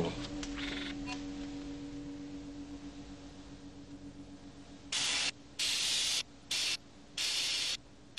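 A film computer terminal's data-readout effect: blocks of static hiss that switch on and off abruptly and irregularly, starting about five seconds in, as the computer runs its teleportation analysis. Before the hiss, a low held tone fades away.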